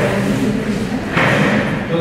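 Indistinct voices talking around a conference table, with a sudden thump about a second in.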